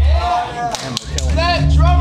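Amplified live rock band on stage: the low bass drone cuts out briefly, a sharp crack comes near the middle, and the bass and guitar sound comes back in right after.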